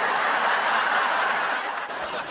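Studio audience laughing at a sitcom punchline, a dense crowd laugh that eases off slightly near the end.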